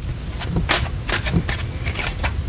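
Tarot cards being handled and drawn from the deck: a series of short card clicks and slides, about six in two seconds, over a steady low rumble.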